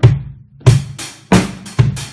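Drum kit played by a self-described non-drummer: about six loud strikes in two seconds at uneven spacing, each with a low thud and a ringing tail.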